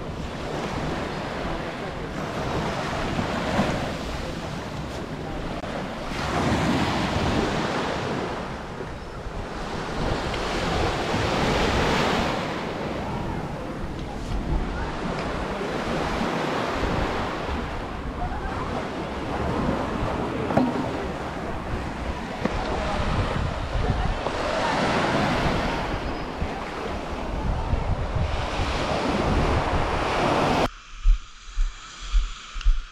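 Sea waves breaking and washing up a sandy beach, the surf swelling and falling back every few seconds, with wind buffeting the microphone.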